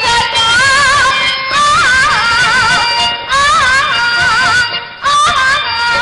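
A woman singing a Telugu padyam (stage verse) in a heavily ornamented style, with wavering held notes, in phrases broken by short pauses, over steady instrumental accompaniment.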